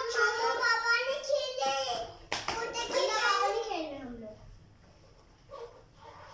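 A young child's high voice calling out in two long vocal stretches without clear words, the second sliding down in pitch, with a few sharp clicks or claps in between.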